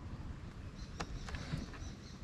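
Quiet background with a few faint, short clicks near the middle, from a gloved hand working the right handlebar grip and brake lever of a Vespa scooter.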